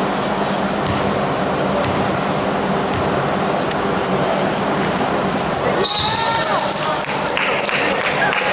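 A basketball bouncing on a hardwood gym floor, a knock about once a second as a player dribbles before a free throw, over the steady hum and murmur of a large gym hall. A few short squeaks near the end, from sneakers on the court as the players move.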